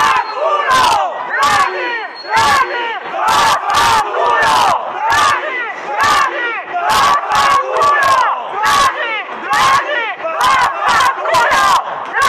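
A crowd of protesters shouting angrily at a police line, many voices at once, with a man shouting through a megaphone. Sharp cracks or knocks cut through the shouting at irregular intervals, roughly twice a second.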